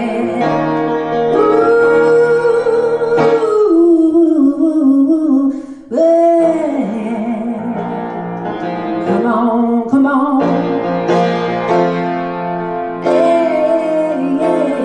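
A woman singing a slow blues to her own piano accompaniment, holding long notes, with a brief break about six seconds in before the next phrase.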